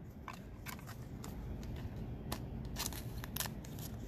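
Trading cards being handled: a string of light, irregular clicks and crinkles of cards and plastic card sleeves over a faint low hum.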